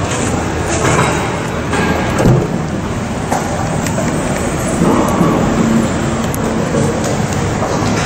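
A continuous rumbling noise with a few short knocks and clunks while an SUV's tailgate is unlatched and lifted.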